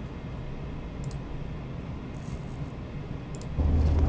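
Quiet low background hum with a few faint clicks. About three and a half seconds in, a louder steady low rumble of a car cabin starts up.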